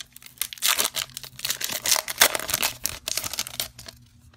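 Foil trading-card pack wrapper torn open and crinkled by hand: a dense run of sharp crackling that stops shortly before the end.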